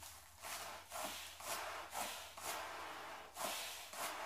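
A man breathing quickly and noisily in and out through a bag held over his nose and mouth, about two breaths a second.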